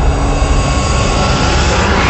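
A loud, steady rush of jet-engine-like noise that grows brighter in the highs towards the end.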